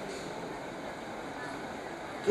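Steady, even background hiss of room tone and microphone noise, with no distinct event.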